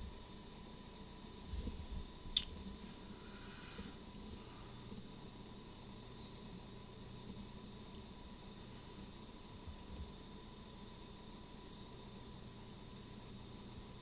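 Quiet room tone with a faint steady hum and thin high whine, broken by a single sharp click about two and a half seconds in.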